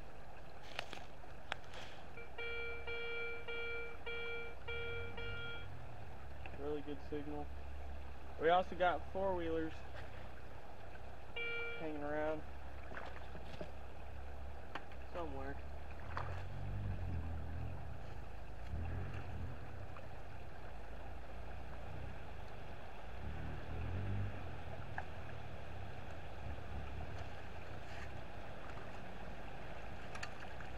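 A metal detector gives a few short tones in the first half: a steady beep pulsed in even pieces, then several warbling ones. Then a plastic sand scoop is worked in a shallow gravel creek bed, with soft sloshing and knocks in the water over the steady sound of the flowing creek.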